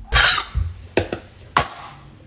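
A woman's breathy scoff through pursed lips, then three short sharp clicks, acting out a stranger's disapproving reaction.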